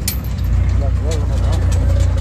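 Steady low rumble of a moving road vehicle heard from inside, with faint voices talking in the background.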